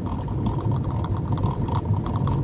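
Steady engine and road rumble of a moving vehicle, heard from inside its cabin.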